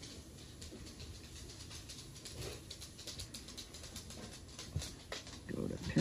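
Quiet room tone with faint, scattered light clicks throughout.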